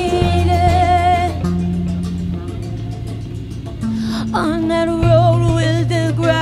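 Live rock band music: bass holding long notes that change every second or two under drums, with a held, wavering melody line above them.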